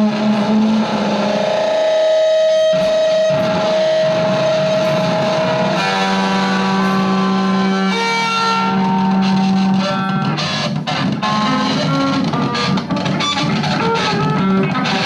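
Electric guitar played through effects pedals in a free noise improvisation: held, effected tones over a steady low drone. One long note sustains for several seconds, then the layered tones shift twice, and sharp crackles cut in during the second half.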